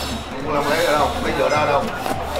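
A voice making sounds without clear words, over background music with a steady, repeating low bass pulse.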